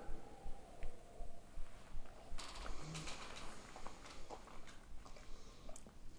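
Faint sips of whisky from tasting glasses, with soft scattered clicks and rustles of glasses and movement.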